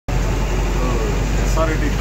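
Steady low drone of a bus's engine and running gear, heard from inside the passenger cabin, with voices talking over it from about a second in.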